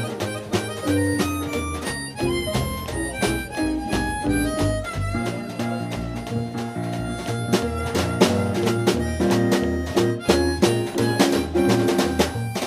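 Live small-group jazz, instrumental: a digital piano plays busy runs and chords over drums and a low bass line that moves note by note.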